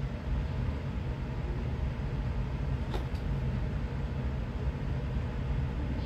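Steady low background rumble with a single faint click about halfway through.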